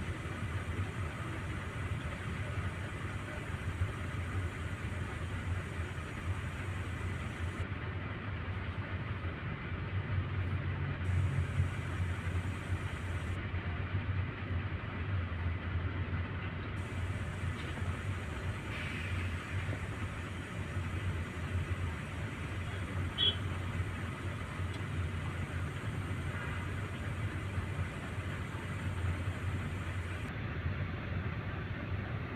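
Steady low rumble of vehicle engines idling close by, under an even hiss of outdoor noise.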